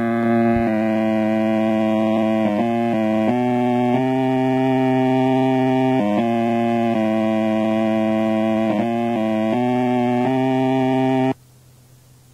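Experimental lo-fi music: a loud, sustained electronic tone rich in overtones that steps between pitches every second or so. It starts abruptly and cuts off sharply about eleven seconds in, leaving only a faint low hum.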